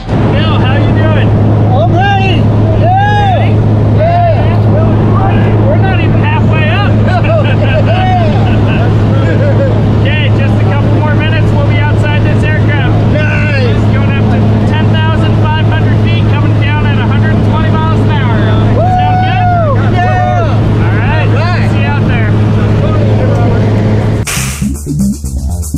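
Steady drone of a turboprop jump plane's engine and propeller, heard inside the cabin during the climb, with a constant low hum. Voices talk over it throughout.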